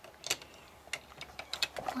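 A few light, sharp clicks of hard LEGO plastic pieces being handled, spaced out over the two seconds.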